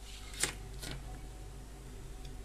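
Two light clicks about half a second apart, as the resistor and its leads are handled against the plastic and metal housing of the light fitting, over a faint low hum.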